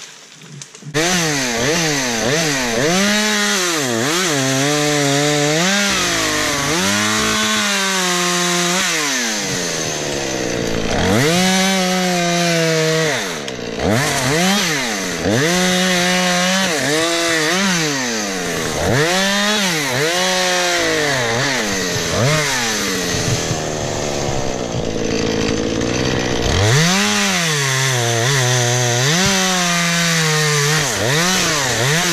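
Husqvarna two-stroke chainsaw bucking a felled tree trunk: the engine starts about a second in and then revs up and drops in pitch over and over as the chain is pressed into the wood and eased off between cuts.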